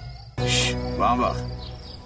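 Title music fades out, then cuts suddenly to outdoor ambience with a brief high-pitched insect chirp.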